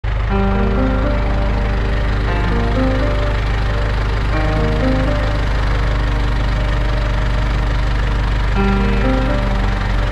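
Tractor engine running at a steady, even pitch, with background music (a melody of short held notes) laid over it.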